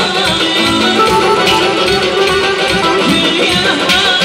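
Live amplified Azerbaijani music at full volume: a band plays a wavering lead melody over a steady beat while a woman sings into a handheld microphone.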